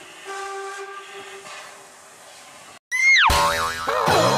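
A faint steady chord of held tones like a steam train whistle, cut off about three seconds in. A loud falling 'boing'-like sound effect follows, with a wavering tone after it, as the outro jingle starts.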